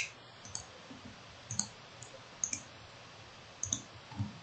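A few faint computer mouse clicks, some in quick pairs, spaced about a second apart.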